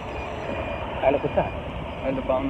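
Steady low engine and road rumble of a motorbike being ridden, heard from on board, with a short stretch of voice about a second in.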